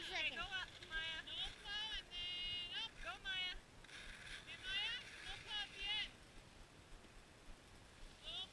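A young child's high-pitched voice making short gliding, wordless sounds in a run of bursts, then falling quiet for the last couple of seconds.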